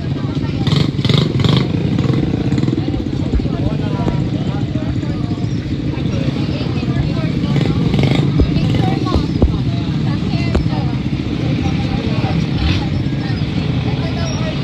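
Small ATV engines running steadily, with people talking in the background.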